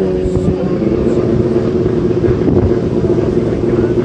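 Several rallycross Supercars' engines running hard on the circuit, their mixed engine note holding a fairly steady pitch.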